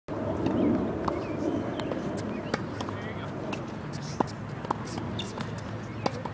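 Tennis balls being struck with rackets and bouncing on a hard court during a rally: a string of single sharp pops spaced roughly half a second to a second and a half apart, the sharpest about four seconds in, over background voices.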